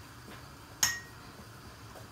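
A single sharp clink about a second in: a knife striking a glass candle jar while jabbing at the hardened wax inside to break it up, with a brief high ring.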